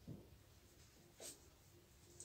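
Faint strokes of a marker on a whiteboard, two brief scratches about a second apart, against near silence.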